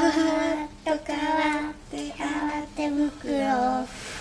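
A child singing a commercial jingle in a string of held notes with short breaks between phrases.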